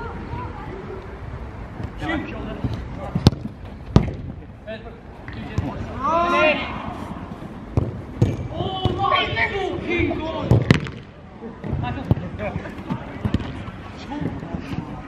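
Footballs being kicked during five-a-side play: a few sharp kicks, two close together about three and four seconds in and another near eleven seconds. Players shout and call out in between.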